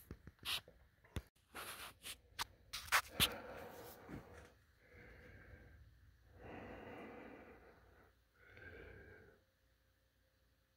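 Faint close handling noise: a few sharp clicks and knocks in the first few seconds, then three soft rushing sounds of about a second each.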